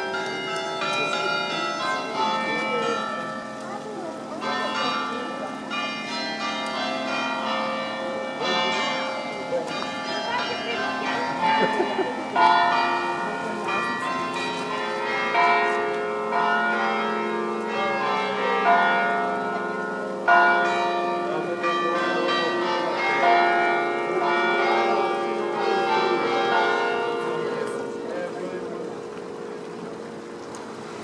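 Church bells ringing a peal: many overlapping strokes that ring on, with stronger strikes every few seconds.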